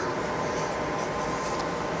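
Steady room noise of a workshop: an even hiss with no distinct events.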